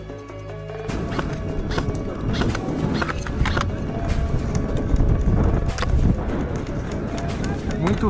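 Background music plays at first. About a second in, outdoor camera sound takes over: wind rumbling on the microphone, with scattered clicks and knocks of gear being handled.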